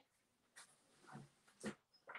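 Near silence: room tone with a few faint, brief handling noises.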